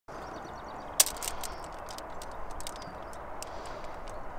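A metal paint tin being tipped and its thick paint poured into a foil-lined tray, with one sharp click about a second in and then a run of lighter clicks and crackles over a steady hiss.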